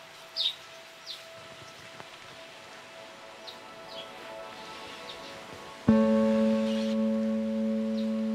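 Background score: a soft, held music bed with scattered short bird chirps over it, then about six seconds in a loud acoustic guitar chord is struck and rings on.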